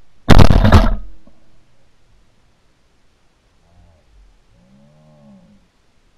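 A single shotgun shot about a third of a second in, very loud and close, recorded by the camera mounted on the gun itself, dying away within a second.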